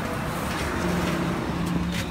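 A motor vehicle's engine on the road: a steady low hum that sets in about a second in, over outdoor background noise.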